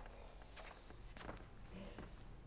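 A few faint footsteps of a person walking across a stage floor, about three steps spaced roughly half a second apart, over a low hum.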